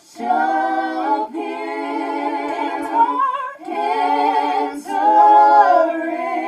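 A small mixed gospel vocal group singing a cappella in parts (sopranos, altos, tenors). The sung phrases are broken by short breaths, the longest just past three seconds in.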